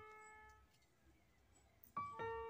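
The last struck piano notes of the background music fading out over about the first half second, then near silence.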